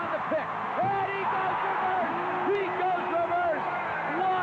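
An excited man's voice calling the play, with drawn-out words, over the steady noise of an arena crowd.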